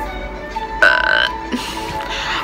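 A single loud burp close to the microphone, lasting about half a second and coming a little under a second in.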